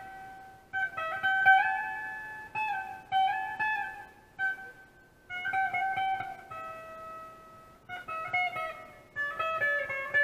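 Squier Affinity Telecaster played through an amp on its bridge pickup: short phrases of single-note lead licks with brief pauses between them, in a clean tone with a little slapback and amp reverb.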